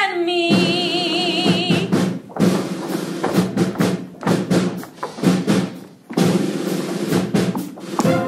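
Live pit band playing an up-tempo dance break punctuated by sharp drum-kit hits, after a sung note held with vibrato ends about two seconds in.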